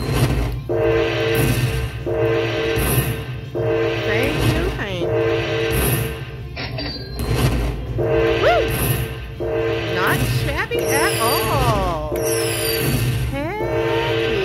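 Aristocrat Dragon Link (Golden Century) slot machine playing its win-tally music as the win meter counts up: a jingle of steady tones repeating about every second and a bit. From about halfway through, whistling glides sweep up and down over it.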